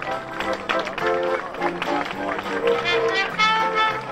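Brass band music playing, with crowd noise underneath.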